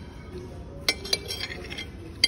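Metal spoon clinking and scraping on a ceramic plate while scooping up the last of the food. Two sharp, ringing clinks come about a second in, followed by lighter taps and scrapes.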